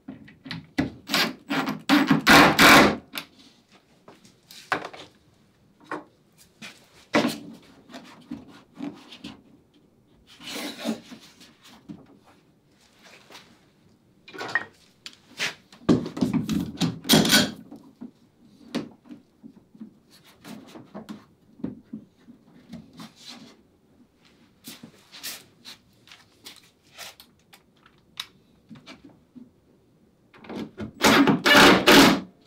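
A wooden cap-rail piece being handled and fitted on a wooden boat's sheer: scattered knocks, thunks and wood rubbing on wood. Louder clusters come about two seconds in and again about sixteen seconds in.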